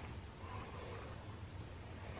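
Quiet room tone: a faint steady hiss with a low hum and no distinct sound.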